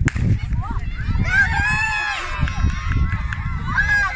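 A single sharp crack of a race start signal, then children shouting and cheering in high voices from about a second in, with wind rumbling on the microphone.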